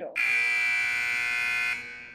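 Digital countdown timer's buzzer sounding one long, steady electronic buzz of about a second and a half, then tailing off: the timer has run down to zero and time is up.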